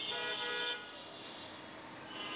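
A vehicle horn sounds once for under a second at the start, over low street background noise.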